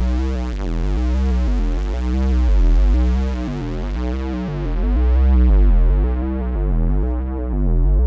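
Synthesizer arpeggio over deep bass notes playing back in GarageBand. An Auto Filter cutoff sweeps from high to low, so the sound grows steadily darker and duller.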